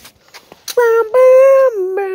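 A child's voice giving one long, high wordless call, held steady and then dropping in pitch near the end.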